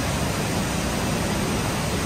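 Rice-mill machinery running: a steady, even noise with no rhythm or breaks.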